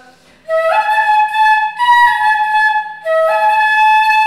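Carnatic bamboo flute (eight finger holes) playing a short melodic phrase twice, the notes stepping upward with gliding slides between them, with a brief breath pause between the two phrases.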